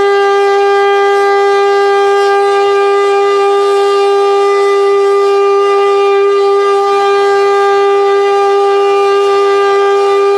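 1971-built Hörmann HLS F71 pneumatic (compressed-air) high-performance siren sounding one loud, steady tone with strong overtones that holds its pitch without rising or falling. This is the one-minute continuous 'Entwarnung' signal, the all-clear.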